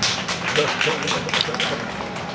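An irregular run of sharp taps, several a second.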